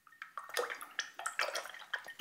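A paintbrush being rinsed in a pot of water, with a run of small irregular splashes and swishes.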